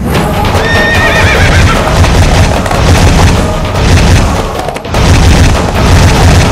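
Loud horror-film soundtrack: a deep, continuous booming rumble with music, and a wavering high-pitched cry about a second in. The rumble drops out briefly just before five seconds, then comes back.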